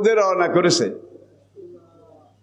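A man's voice speaking a single drawn-out, sing-song phrase of about a second through a microphone, ending on a hissing 's' sound. A steady low electrical hum runs underneath.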